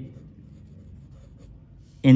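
Pencil writing a word on a textbook page: faint scratching of the lead on paper.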